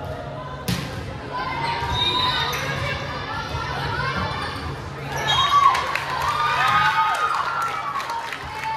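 Volleyball rally in a gymnasium: a sharp smack of the ball being struck about a second in, followed by players' high-pitched calls and shouts that grow loudest in the last few seconds as the point ends, with scattered short ball and shoe sounds.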